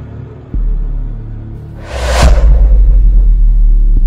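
Cinematic intro sound design: a deep bass boom about half a second in, then a rising whoosh that peaks just after two seconds and gives way to a loud, sustained low rumble.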